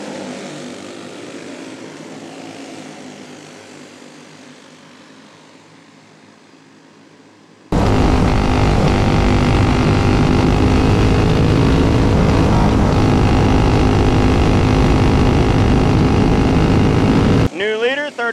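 Sr. Champ 425-class kart engines pass and fade away over the first several seconds. Then, heard close up from the onboard camera, one kart's single-cylinder engine runs loud and steady at racing speed for about ten seconds, cutting off suddenly near the end.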